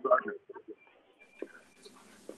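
A short fragment of speech over a phone line fades out, followed by faint murmurs and a soft line hiss that comes in near the end.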